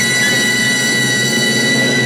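A big band's brass and reeds holding a long final chord, with a high note sustained on top, as the last song closes.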